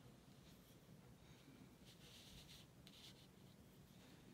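Faint strokes of an ink brush on a paper postcard: a few short soft scratches, the longest about halfway through.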